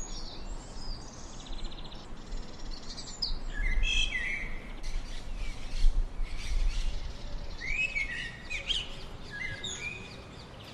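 Songbirds chirping and twittering, including a male house sparrow's chirps: clusters of short, sliding chirps about four seconds in and again from about seven and a half seconds, over higher, quicker twittering. A low rumble runs underneath through the middle.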